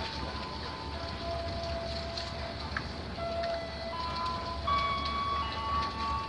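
A passenger train's wheels squealing at several steady pitches that shift and overlap, over a low rumble of wheels on track, as the train slows into a station.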